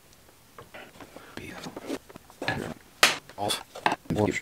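Screwdriver and pliers scraping and clicking against a Stihl 180 chainsaw's plastic handle as tight rubber mounting plugs are pried out, in short irregular bursts with a sharp click about three seconds in.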